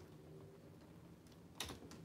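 Near silence with a faint low hum, broken by one sharp click or knock about one and a half seconds in, from items being handled.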